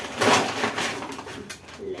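Plastic shopping bag rustling and crinkling as a bottle is pulled out of it, loudest in the first half-second and dying away after about a second and a half.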